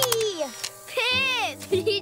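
Young cartoon voices making short exclamations, one falling in pitch near the start and another about a second in, over light background music with held notes.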